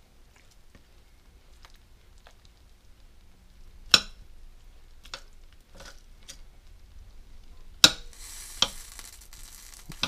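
Metal fork working through slow-cooked chicken in a crock pot: a few sharp clicks of the fork against the pot, the loudest about four seconds in and again near eight seconds, with soft wet scraping in between.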